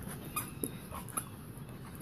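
Two poodles play-wrestling, with brief dog vocal sounds and three short, sharp noises about half a second to a second in.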